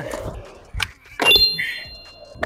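Skateboard 360 flip on concrete: a light pop about a second in, then a loud slap as the board and wheels land, followed by a brief high ring.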